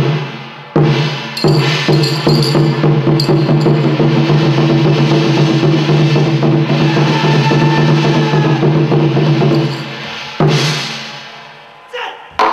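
Percussion-led music with loud drum strikes: a sudden hit opens it, more strikes follow every half second or so over a steady held low tone, and a fresh hit about ten seconds in fades away toward the end.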